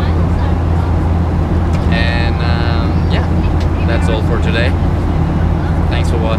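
Steady low drone of an airliner cabin in flight: engine and airflow noise at an even level throughout.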